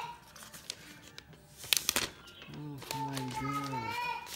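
Thin protective plastic wrap crinkling as it is peeled off a laptop lid, with a sharp, loud crackle just before the middle. In the last second and a half a person makes a drawn-out wordless vocal sound.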